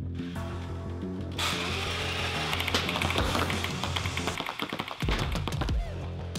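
Background music with a steady bass line. About a second and a half in, a motorized Nerf Rival Prometheus-based minigun whirs up and fires foam balls in a rapid stream, rattling for a few seconds, with thumps near the end.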